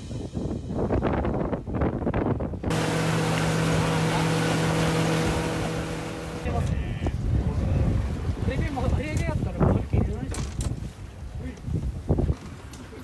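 A boat's engine running with a steady hum, amid wind and water noise; the sound shifts abruptly a few times, as between shots.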